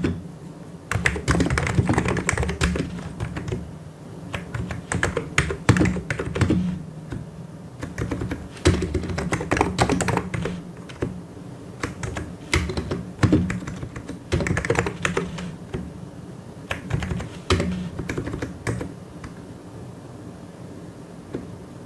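Fast typing on a mechanical keyboard, quick runs of key clicks and clacks in bursts with short pauses, thinning out shortly before the end.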